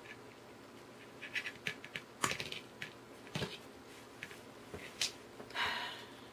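Wire cutters snipping thin craft wire, with one sharp click as the loudest sound, among scattered small clicks and ticks from handling the wire and tools, and a short rustle near the end.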